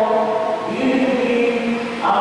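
Voices singing a slow liturgical chant during Mass, each note held at a steady pitch, with a change of note about three quarters of a second in.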